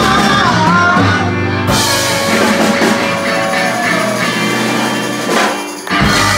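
Live blues band playing in a pub: drum kit and electric guitars, with a woman singing.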